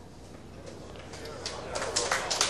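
Low murmur of a tournament audience hushed after a shot, with the first few faint claps coming in near the end as the applause begins.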